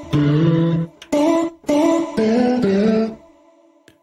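A sampled snippet of sung vocal played from a MIDI keyboard as a short phrase of about six held notes at changing pitches, dry, fading out near the end.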